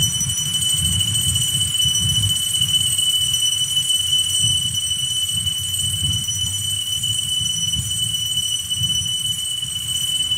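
Altar bells ringing without a break through the elevation of the chalice, the sign that the consecration has just been spoken. It is one steady, high, bright ring over a low rumble.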